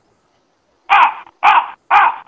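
Three harsh caw-like calls about half a second apart, starting about a second in, after a silent gap.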